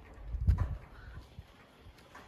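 Footsteps of a person walking on stone paving, picked up as dull low thuds by a handheld camera; the loudest step falls about half a second in, then the steps fade into quiet outdoor background.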